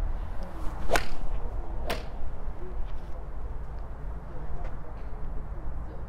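Sharp cracks of a forged iron striking golf balls off a range mat: two cracks about a second apart. A steady low wind rumble runs underneath.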